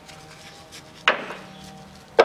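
A single sharp knock about a second in, with a short ringing tail. It is a tool or part knocking during hand work on the engine's timing-belt drive.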